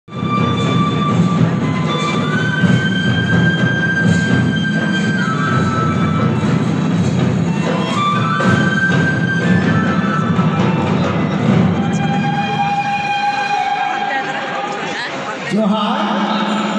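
Live Sarhul dance music: a troupe of mandar barrel drums beating steadily under a Santhali song, with long held notes over the drumming.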